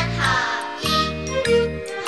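Children's choir singing a Cantonese children's song over a light pop backing track with chiming, bell-like notes.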